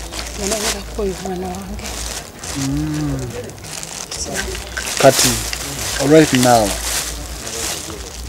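Speech: people talking in conversation, louder about five seconds in.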